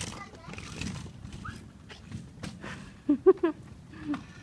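Three quick bursts of laughter a little after three seconds in, the loudest sound here. Under them is a low, steady rumble with a few light clicks, fitting a child's kick scooter rolling on rough concrete.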